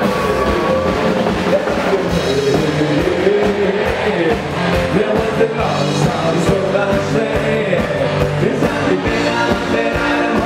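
A Bavarian brass band playing live with singing, a loud rock-style party number with a steady beat, in a large festival tent.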